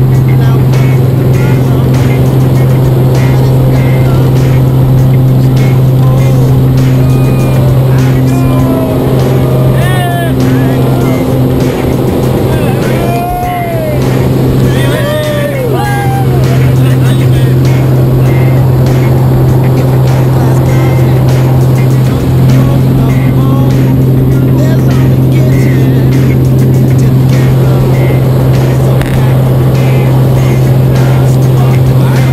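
A small high-wing jump plane's engine and propeller droning steadily and loudly inside the cabin during the climb, with voices calling out over it around the middle.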